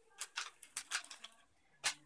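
A string of light clicks and small rustles from handling a small clear plastic waterproof box and the wrapped band-aids inside it: a quick run of ticks over the first second and a half, then one more click near the end.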